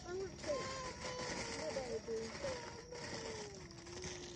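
A voice holding one long, wavering note that slowly falls in pitch, over faint outdoor background noise.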